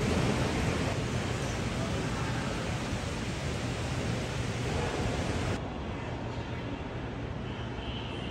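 Steady ambient noise of a large airport terminal hall, an even airy rush with a low hum and faint distant voices. About five and a half seconds in, the sound abruptly turns duller as the treble drops away.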